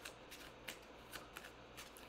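A deck of tarot cards being shuffled by hand: a faint run of soft card-on-card ticks.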